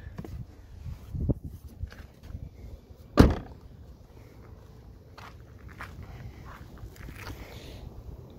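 A Mazda RX-8's door shutting with one loud thunk about three seconds in, after a couple of lighter knocks. Footsteps follow as someone walks along the car.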